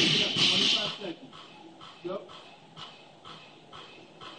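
A dropped barbell with bumper plates clattering and settling on the floor in the first second, then a man panting hard from exertion, about two breaths a second.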